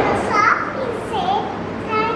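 A young girl's voice saying a few short words, with brief gaps between them.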